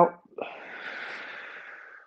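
A man's long, slow exhale through the mouth, done as part of a guided breathing exercise. It starts about half a second in and fades slowly toward the end.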